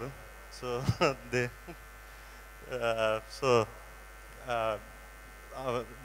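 A steady electrical hum from the microphone and sound-system chain, under a man's few short, hesitant words spoken into a handheld microphone.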